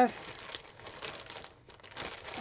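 Clear plastic craft packaging crinkling as it is handled, with light rustling that fades away towards the end.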